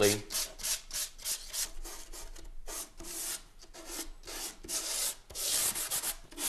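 Hand sanding block lightly sanding the varnish ground coat on a violin's back in quick, even back-and-forth strokes, cutting down bubbles and brush texture before the first colour coat.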